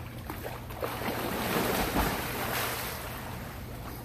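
Swimming-pool water splashing and sloshing as people move through it, swelling loudest about a second and a half in and easing off toward the end.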